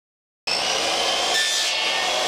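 DeWalt miter saw running and cutting through a wooden board: a steady motor whine over the rasp of the blade in the wood, starting abruptly about half a second in.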